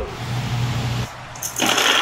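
Marbles released from a GraviTrax starting gate, rolling down steel rails with a steady low rumble. From about a second and a half in, a louder, brighter rolling clatter follows as they run onto the plastic track tiles.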